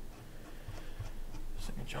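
Quiet meeting-room tone with a few faint rustles and clicks of paper being handled, in a pause between speakers.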